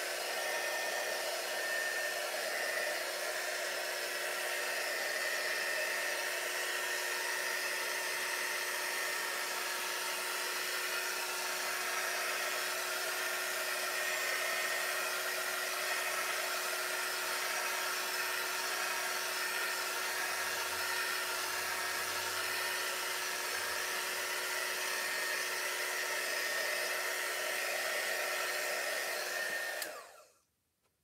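Handheld craft heat gun running steadily: an even fan rush with a constant hum, drying freshly stencilled paint. It cuts off abruptly at the very end.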